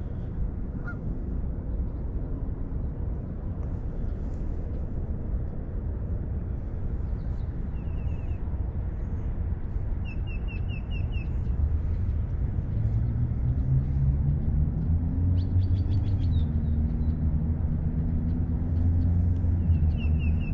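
Birds calling in a few short, quick series of high notes over a steady low outdoor rumble. A low engine-like drone grows louder through the second half.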